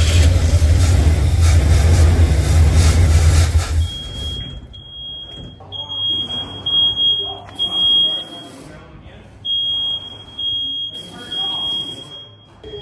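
Ford 460 big-block V8 running loudly for about four seconds, then falling away sharply. After that, a steady high-pitched electronic tone sounds on and off, like a warning buzzer.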